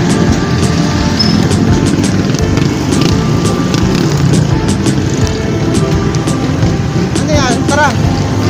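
Street traffic with motorcycles passing close by, their engines running, mixed with voices and music.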